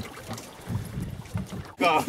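Wind buffeting the microphone as an uneven low rumble in an open wooden boat at sea, with a few faint knocks. A man laughs near the end.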